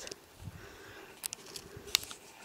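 Quiet footsteps in snow, with two sharp clicks about a second and a half apart.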